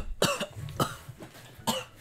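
A person coughing and gagging in several short, harsh bursts, retching at the taste of the food.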